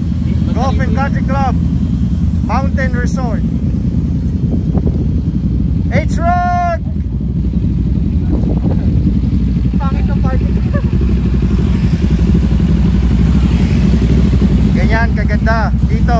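Motorcycle engines idling in a steady low rumble, with people's voices calling out over it now and then, one long call about six seconds in.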